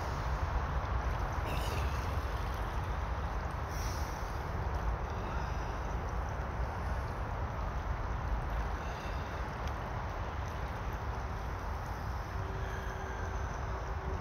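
Shallow river running steadily over a stony bed around two people sitting in it: a continuous rush of water with a low rumble underneath.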